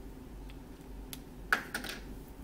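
Cloth wiping a whiteboard: a few faint rubs, then a short burst of quick scrubbing strokes about one and a half seconds in.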